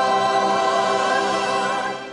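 A choir singing one long held chord with musical backing, starting to fade out near the end.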